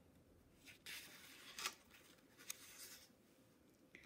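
Faint rustle and swish of a hardcover picture book's paper page being turned, strongest between about one and two seconds in, with lighter rubs of paper after.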